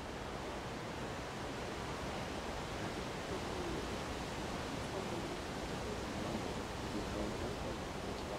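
Steady rushing outdoor background noise over an open field, with faint distant voices in the middle.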